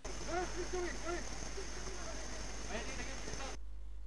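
Waterfall water splashing as a steady hiss, with a person's voice in short, quickly repeated syllables over it, most in the first second. It cuts off suddenly just before the end, leaving only a low hum.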